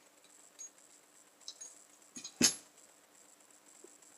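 Faint, soft lip smacks of a man drawing on a tobacco pipe, with one sharp click about two and a half seconds in.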